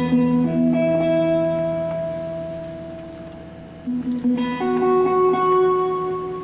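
21-string harp guitar played solo: plucked notes and chords that ring on and slowly fade, over low bass strings left sounding. About four seconds in a fresh group of notes is plucked.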